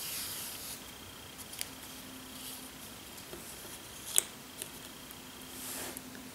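Quiet rubbing and rustling of wool yarn and a cardboard strip being handled, with a few small clicks, the sharpest about four seconds in.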